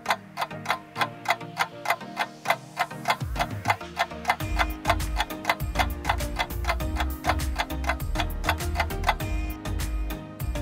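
Countdown-timer ticking, about four sharp ticks a second, over background music whose bass line comes in about four seconds in.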